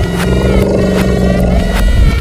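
Background music with a loud, steady low drone laid over it, which cuts off at the end.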